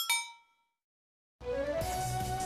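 A single bell-like metallic ding added as an edited sound effect: one strike whose ringing tones fade out within about half a second, followed by about a second of dead silence before outdoor background sound returns near the end.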